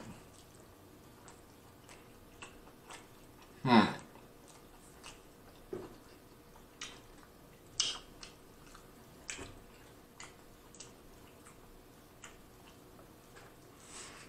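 Close-miked chewing of a steak burrito: scattered wet smacks and mouth clicks, with a louder mouth sound just before four seconds in.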